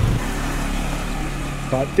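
Motor scooter engine running close by, a steady hum.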